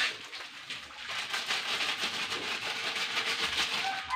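A knock at the start, then a steady hiss of water running into a top-loading washing machine's tub, building up about a second in.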